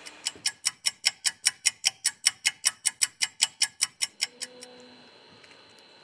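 Ticking-clock sound effect, about five quick ticks a second, marking a three-minute wait for the battery adhesive to soften. The ticking stops about four seconds in and is followed by a faint short low tone.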